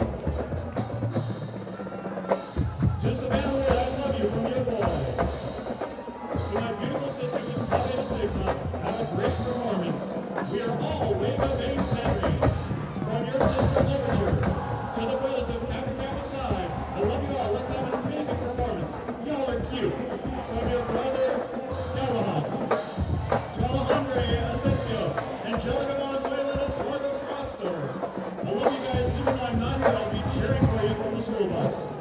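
Marching band playing: sustained brass chords over a drumline and bass drums hitting in rhythm.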